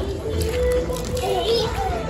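A toddler's voice calling out and babbling while playing, without clear words.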